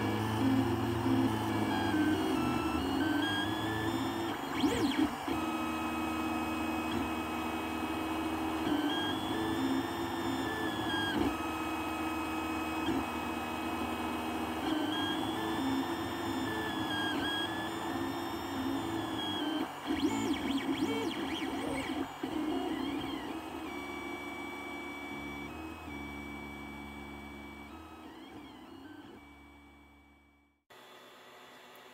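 Stepper motors of an Ender 3 3D printer whining through a print, a layer of steady tones with pitches that glide up and down in repeating arcs as the axes speed up and slow down. The sound fades out near the end.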